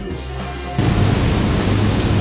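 Background music, then a loud, even rush of noise that cuts in abruptly about a second in, with low steady tones beneath it.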